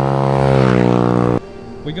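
Small motorbike engine passing close by: a loud steady drone that cuts off abruptly about a second and a half in.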